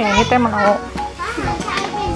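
A child's high voice calling out twice, over background music.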